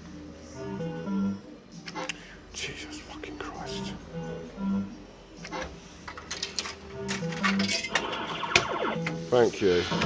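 A three-reel fruit machine playing short electronic note tunes as its reels spin, with sharp clicks as they stop. Near the end there is a louder, busier stretch of machine sound with a voice-like quality.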